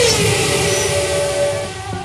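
Transition sound effect between segments: a noisy whoosh with a falling tone, then a held note that fades out near the end.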